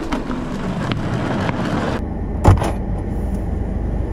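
A motor vehicle running, with a steady low rumble and road noise. The sound changes abruptly about halfway through, and a single thump comes a little later.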